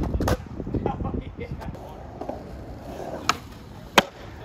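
Skateboard on concrete: a sharp clack of the board just after the start, then the wheels rolling with a low rumble. There is another click a little after three seconds and a loud crack at the very end.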